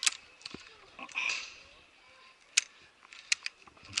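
A handful of sharp clicks and knocks, scattered through a mostly quiet stretch, from a climber's safety gear and footing on a high ropes course. There is a short breathy rustle about a second in.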